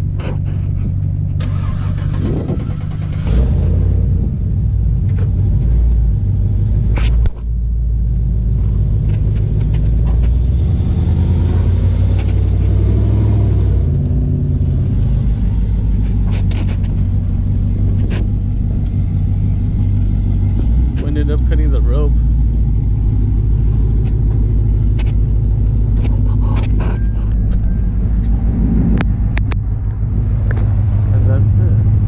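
Pickup truck engines running steadily and low while a Chevrolet Silverado stuck in sand is pulled free on a tow strap, with a brief sudden drop in the sound about seven seconds in.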